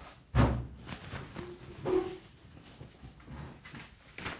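An elderly man getting up from a chair and shuffling off: a knock about a third of a second in, rustling of clothes, and a short strained groan around two seconds in.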